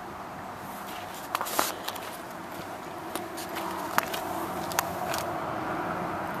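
Scattered footsteps and handling clicks on a gravelly paved lot over steady outdoor background noise, with a handful of short sharp clicks spread through the second half.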